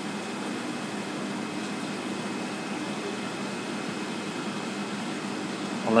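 Steady mechanical hum and hiss of running equipment, with a faint low tone underneath and no change in level.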